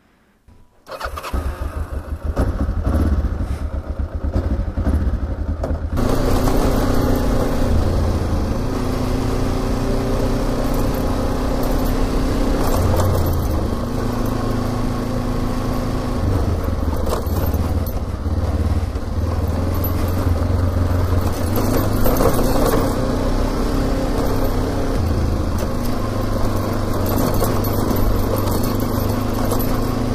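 Kawasaki KLE 500 parallel-twin motorcycle engine starting about a second in and running at low revs. From about six seconds the bike rides off along a dirt track, with the engine note changing through throttle and gear changes under a steady rush of wind and tyre noise.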